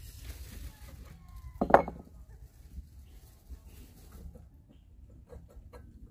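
Light clinks and knocks of a portable propane stove and its metal tripod stand being handled and taken apart. One louder, short sound comes a little under two seconds in, and a few small clicks follow near the end.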